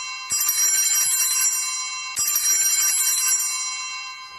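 Altar bells (Sanctus bells) rung at the elevation of the consecrated host: a cluster of small high bells rings out and fades, struck again about a third of a second in and once more just after two seconds.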